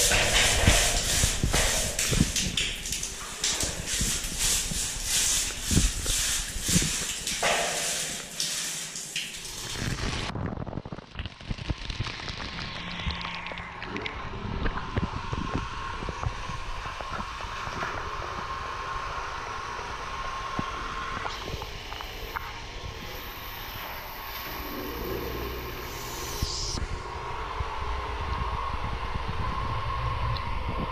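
Stiff-bristled broom scrubbing the wet, soapy concrete wall of a water tank in rapid repeated strokes. About ten seconds in it gives way to a steady rush of water pouring and splashing inside the tank.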